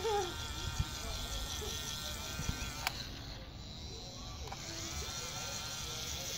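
Small electric motor of a toy bubble gun whirring steadily, with a single sharp click about three seconds in.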